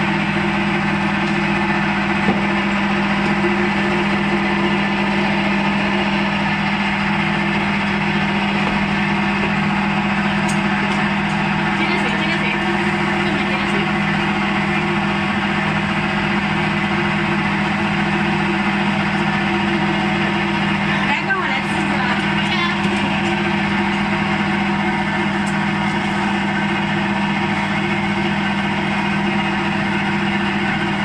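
Electric-motor-driven rice cake extruder running steadily, a constant unchanging hum, with soaked rice in its hopper.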